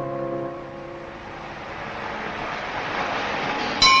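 A road vehicle approaching, its sound growing steadily louder. Just before the end, music starts abruptly.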